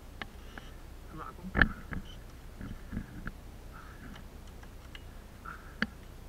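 Knocks and rustles of handling close to a body-worn camera, with one much louder thump about a second and a half in and a sharp click near the end. Between them come soft breaths, the rider catching his breath after a crash.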